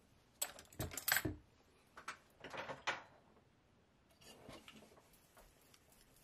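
Tools and a wooden handle being handled on a workbench cutting mat: a few light knocks and clinks in the first three seconds, then fainter ones.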